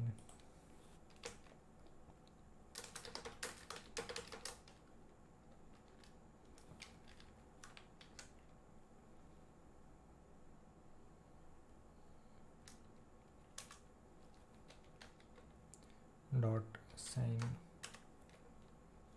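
Typing on a computer keyboard: a quick flurry of keystrokes about three seconds in, then scattered single keystrokes. A short spoken murmur comes near the end.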